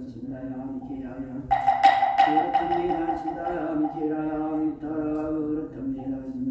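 A Buddhist monk chanting in a steady, near-monotone voice. About a second and a half in, a small metal bell is struck a few times in quick succession and rings out for a couple of seconds under the chant.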